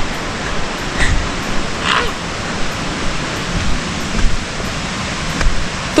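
Distant waterfall: a steady rushing hiss of falling water heard through the forest, with a few low thumps.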